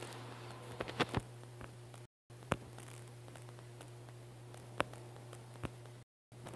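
A few faint, sharp clicks and taps over a steady low hum: finger taps and handling of a phone while it records its own screen. The sound cuts out completely for a moment about two seconds in.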